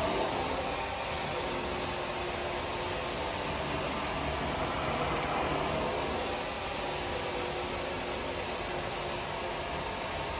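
Carpet-extraction wand, a Vantool 14SS with a hybrid glide head, drawing air and water out of the carpet under strong vacuum as it is worked across the pile: a steady rushing hiss that swells slightly in the middle.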